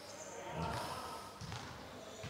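A basketball bounced a few times on a hardwood court as the shooter dribbles before a free throw.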